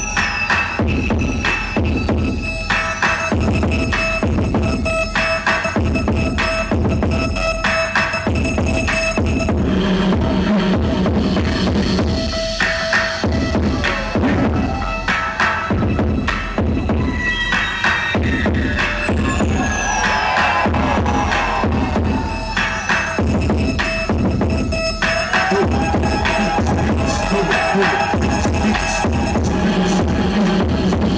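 Hip-hop dance track playing loud, with a steady repeating beat and swooping effects near the start and about two-thirds of the way through.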